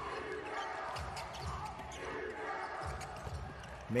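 A basketball dribbled on a hardwood court, a few dull bounces, over the murmur and voices of an arena crowd.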